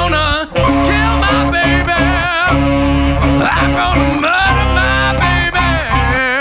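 Blues-rock band playing, with electric bass, drums and tenor saxophone under a wavering lead line with wide vibrato. The music drops out for a moment about half a second in, then carries on at full level.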